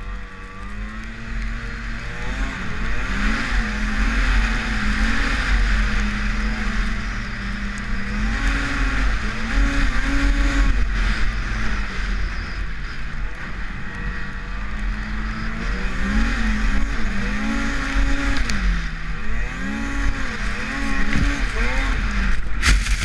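Arctic Cat M8000 Sno-Pro snowmobile's 800 two-stroke twin running hard while riding through snow. Its pitch holds steady for stretches, then rises and falls repeatedly as the throttle is worked, over a steady hiss and a low rumble.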